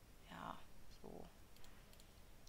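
Two short, quiet murmured vocal sounds from the narrator in the first half, followed by a couple of faint computer mouse clicks.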